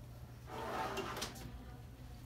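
Detector tray under an x-ray table sliding shut: a soft sliding sound with a few light clicks, about half a second to a second and a half in.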